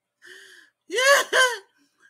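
A woman laughing: a faint breathy sound, then two loud, short 'ha' bursts with a rising-then-falling pitch about a second in.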